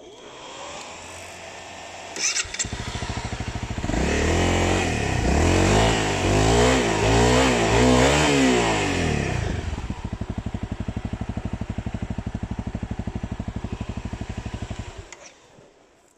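Motorcycle engine starting, then revved up and down several times. It settles into a steady, pulsing idle and is switched off shortly before the end.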